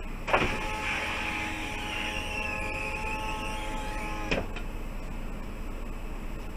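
A small electric motor in the bus cab runs at a steady pitch for about four seconds, with a sharp click as it starts and another as it stops.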